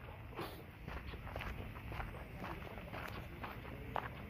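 Faint footsteps of a person walking on a dirt path with dry grass, about two steps a second, over a low rumble.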